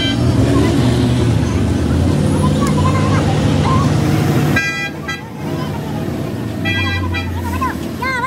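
Heavy engine rumbling steadily under street traffic noise for the first half, then a vehicle horn honking twice, once just past the middle and once near the end, with men's voices calling out.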